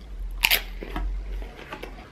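A bite into a cheese-topped tortilla chip: one sharp crunch about half a second in, followed by a few fainter chewing crunches.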